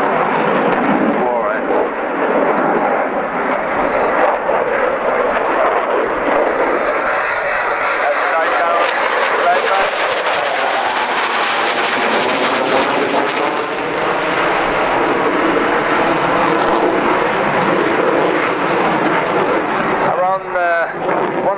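Dassault Rafale's twin M88 turbofan engines heard from the ground as the fighter flies display manoeuvres overhead: a loud, continuous jet noise whose pitch sweeps up and down as the aircraft moves. It turns harsher and hissier from about 8 to 13 seconds in.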